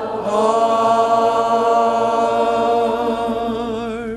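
A church congregation singing a hymn, holding one long final chord that stops about four seconds in.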